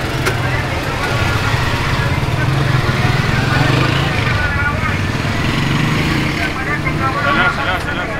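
An auto rickshaw's small engine running steadily in slow, jammed street traffic, heard from inside the rickshaw, with people's voices around it and a voice nearer the end.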